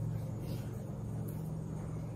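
Steady low hum of room background noise, with no other distinct event.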